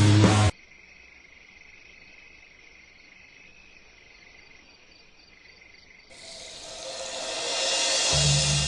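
Loud rock music cuts off abruptly just after the start, leaving faint, steady, high-pitched insect chirring. About six seconds in, music swells back and grows steadily louder.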